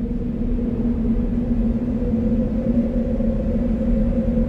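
Low, sustained soundtrack drone: a steady deep hum over a rumble, slowly swelling in loudness.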